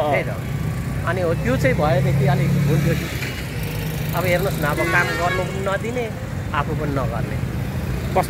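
Steady low rumble of street traffic, with motor vehicle engines running, under a man talking. The engine sound is heaviest in the first few seconds.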